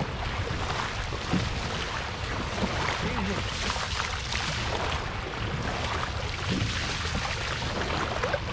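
Water and wind noise alongside a dragon boat under way, with the crew's paddles dipping and splashing in the water.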